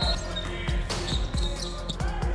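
A basketball being dribbled on a hardwood court: a run of low thumps a few tenths of a second apart, over background music.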